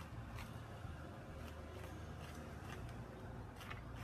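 Faint scratching of a marker pen drawn over sand-textured painted canvas and raised string lines, a few light scratches over a low steady room hum.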